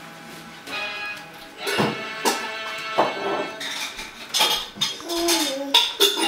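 A baby slapping a computer keyboard, the keys clattering, among ringing musical notes that start sharply with the strikes, several in a row.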